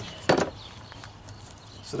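A single short knock about a third of a second in as a cut piece of flexible stone veneer is handled and pressed onto the plywood sample board, then only a low steady background.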